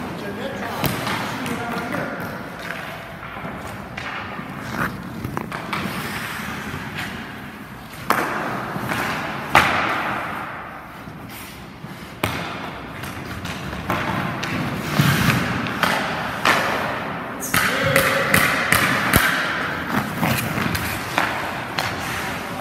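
Hockey practice on ice: sharp knocks of sticks striking pucks and pucks hitting the goalie's pads and the boards, over skates scraping across the ice.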